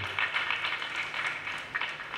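Audience applauding, a dense patter of many hands that eases off near the end.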